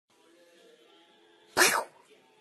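A cat sneezing once, a short sharp burst about a second and a half in.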